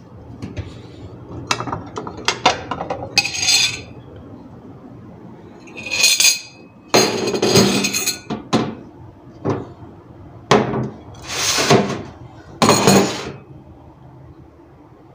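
Dishes being handled at a stainless-steel sink: a ceramic plate, cup and metal cutlery clinking and clattering, in a string of sharp knocks and several longer clattering bursts.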